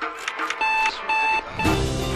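Electronic beep tones over background music: two even beeps about half a second apart, then a shorter third, as the music swells near the end.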